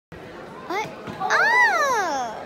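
A young child's excited wordless cry: a short rising call, then a longer, louder one that rises and falls in pitch.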